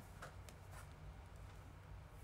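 Near silence: a low steady room hum with three or four faint light taps in the first second.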